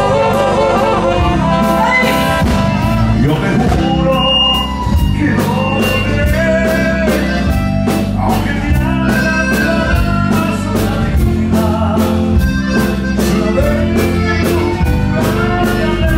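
Live Tejano band playing a song, with a woman singing lead over trumpets and other horns and a steady drum beat.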